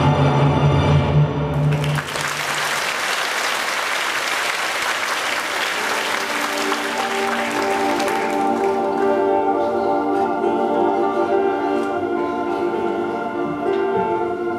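Audience applause breaks out about two seconds in over the show's sustained orchestral music and dies away after about six seconds, leaving the music's long held notes.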